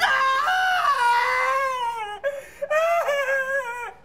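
A man wailing in exaggerated crying: two long, high-pitched cries that slide downward, with a short break a little past halfway.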